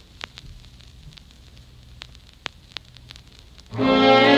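A quiet gap between songs in a DJ mix: faint crackle with a few scattered clicks and pops over a low hum. Loud music with strings starts suddenly near the end.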